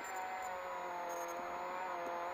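Peugeot 208 R2B rally car's engine heard from inside the cabin, running at fairly steady revs under load, with tyre and road noise beneath it.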